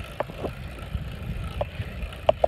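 Wind rumbling on a phone microphone during a bicycle ride, with a few short clicks or rattles.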